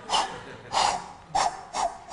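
A man panting hard in short, rhythmic puffs, four breaths in two seconds, voicing the exertion of a skier racing downhill.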